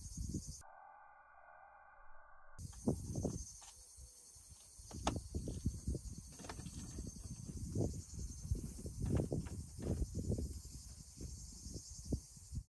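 Faint, steady high-pitched chorus of cicadas, with irregular low gusts of wind on the microphone; the sound drops out for about two seconds near the start.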